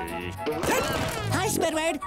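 Cartoon burrowing sound effect: a rapid scraping rush as a character digs up through the sand, over light background music, with a cartoon voice sounding near the end.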